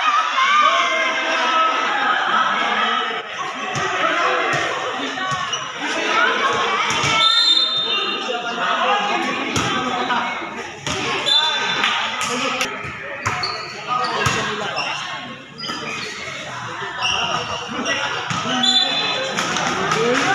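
A volleyball being struck and bouncing on a concrete court: a scattered series of sharp smacks and thuds over continuous chatter and shouts from players and spectators, echoing under the hall's roof.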